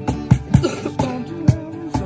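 Two acoustic guitars strummed together over a cajón beat, with sharp slaps landing on a steady rhythm.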